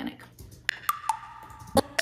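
A handful of short, sharp click samples played back from a music production session, irregularly spaced. Two are followed by a brief held ringing tone. These are pitched-up mouth clicks used as percussion, with reverb added to make them sound more organic.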